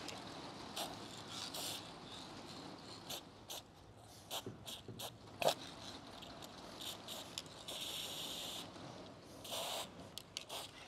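Aerosol spray paint can with a thin-line needle cap hissing in a string of short bursts as crack lines are sprayed, with one longer hiss of about a second near the end.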